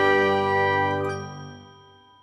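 The closing chord of a short logo jingle: bright, chime-like tones held together, then fading out over the second half.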